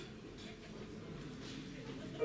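A quiet lull in a live band's playing: only faint room noise, with a few soft scattered sounds and no held notes.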